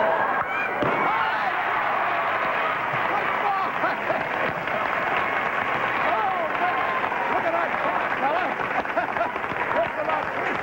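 Studio audience laughing, cheering and clapping, with a sharp balloon pop about a second in.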